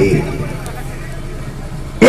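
A pause in a man's speech over a microphone and loudspeakers: the voice trails off at the start, leaving a steady hiss of background noise with a faint low hum until he speaks again.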